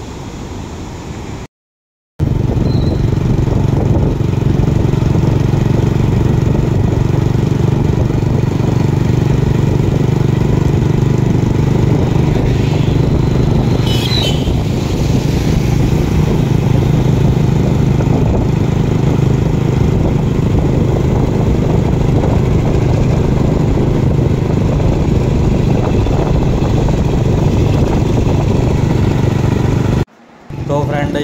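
Motorbike engine running steadily while riding along a road, with heavy wind rushing over the microphone; it starts about two seconds in after a short break. A brief high chirp comes about halfway through.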